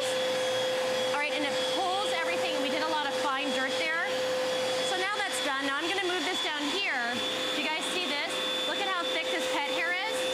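Bissell PowerGlide Lift-Off Pet upright vacuum running, a steady whine of its suction motor drawn through the hose while the pet hair eraser tool's brush roll sweeps dirt off stair carpet.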